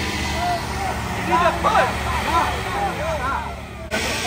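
Winnebago motorhome engine running with a steady low rumble, while several people's voices call out and laugh over it from about a second in.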